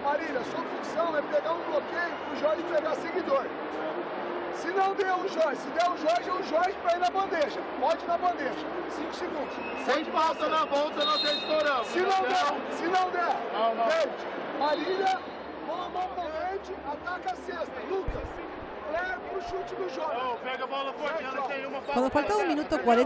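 Men's voices talking over one another in a busy arena, with crowd chatter behind and scattered short knocks.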